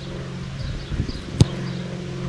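A single sharp strike of a boot on an Adidas Fussballliebe football about one and a half seconds in: a knuckleball free kick being struck. A steady low hum runs underneath.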